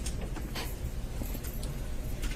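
Courtroom microphone room tone in a pause between question and answer: a steady low hum with a few faint clicks and rustles.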